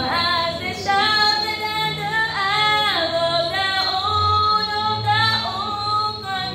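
Girls singing a song into a handheld microphone, holding long notes that glide between pitches.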